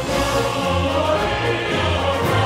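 Sampled men's choir singing held notes in a choral music track, made from Soundiron Mars Symphonic Men's Choir poly-sustain patches crossfaded to form words, with a little reverb added.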